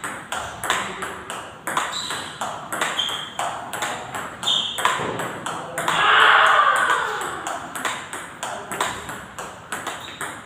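Table tennis balls clicking off paddles and the table in a fast multiball drill, a few sharp clicks a second. About six seconds in, a louder drawn-out sound falling in pitch rises over the clicks for about a second.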